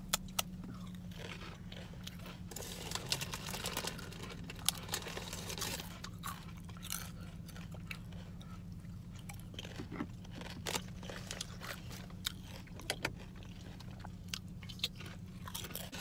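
A person chewing crunchy spicy potato chips close to the microphone: an irregular run of crisp crunches, over a steady low hum.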